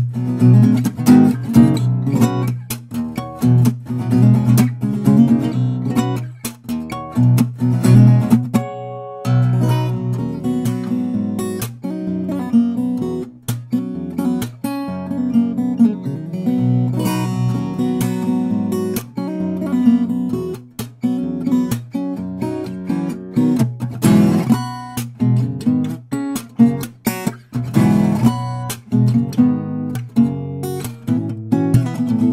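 Cort L900P acoustic guitar played fingerstyle: a steady flow of plucked notes and chords, with a brief break about nine seconds in.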